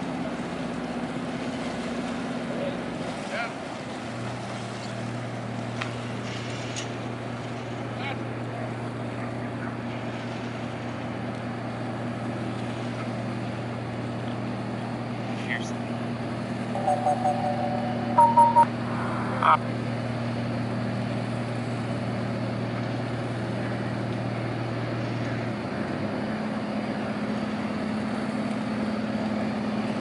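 Crab boat's diesel engine running at slow speed in a steady hum, with a deeper tone that comes in about four seconds in and drops out near the end. A few short higher-pitched sounds stand out about two-thirds of the way through.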